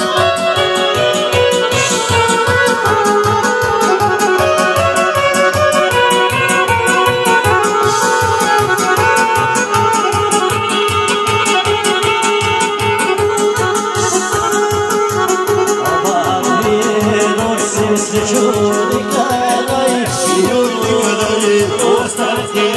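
Live Balkan folk band playing an instrumental dance tune led by accordion over a steady, even beat.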